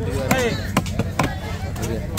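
A heavy, long-bladed fish-cutting knife chopping fish flesh into pieces on a wooden log chopping block. Several sharp chops come in quick, uneven succession.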